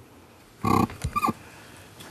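A person's voice: a short, grunt-like vocal sound about half a second in, then two briefer ones, in a quiet room.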